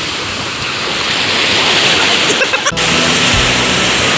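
Steady rush of surf breaking on a sandy beach. A little under three seconds in, the sound briefly cuts out and a low, steady musical drone comes in beneath the surf.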